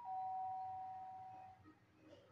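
Two-note doorbell chime: a high ding followed at once by a lower dong, both ringing out and fading away within about a second and a half.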